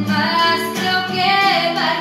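A girl singing a slow ballad over acoustic guitar accompaniment, her voice coming in at the start and holding and sliding between notes.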